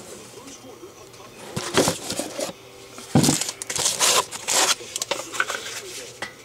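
Contents of a cardboard trading-card box being handled and lifted out: several short bursts of rustling and scraping, louder from about three seconds in.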